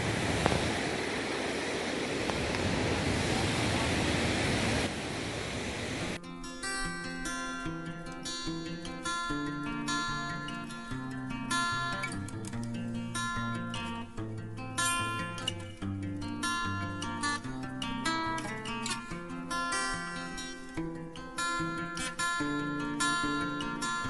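A steady rushing noise for the first few seconds, then background music with plucked acoustic guitar starts abruptly about six seconds in and carries on.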